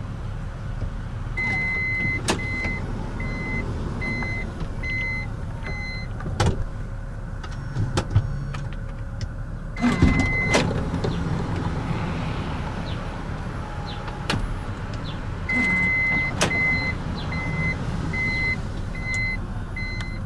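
Toyota Alphard power sliding doors being worked, with the door warning chime beeping about twice a second while a door moves and several sharp clunks from the door mechanism. This happens in two runs, early and again late.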